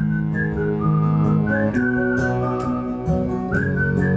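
A man whistling a melody into a microphone over sustained guitar chords. The tune moves in short phrases of held notes, and a new phrase starts with an upward slide about three and a half seconds in.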